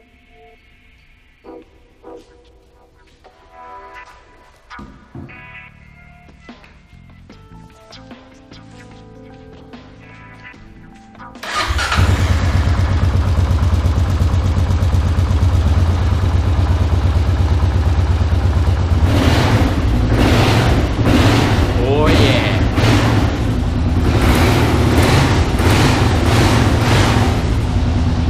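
Background music for the first ten seconds or so. Then, about eleven seconds in, a Kawasaki KLR650's single-cylinder engine starts suddenly and runs loud and steady, turning to a pulsing, rising and falling note over the last several seconds: the bike running again after its gear change spring was replaced.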